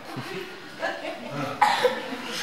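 A person coughing loudly once, about one and a half seconds in, amid indistinct voices.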